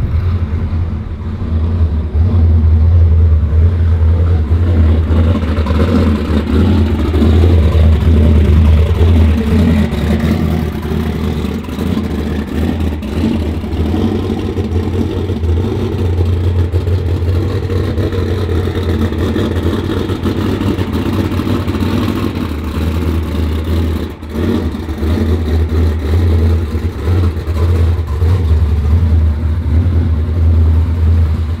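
A motor vehicle engine running steadily with a low drone, dipping briefly about 24 seconds in.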